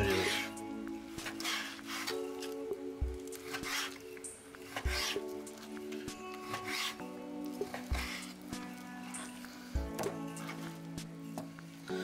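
Background music of sustained, slowly changing chords. Over it, a kitchen knife slices raw turkey breast on a wooden cutting board, knocking on the board several times.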